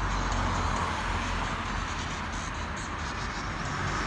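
Road traffic: a car passing on the street, with a steady low rumble, and music playing underneath.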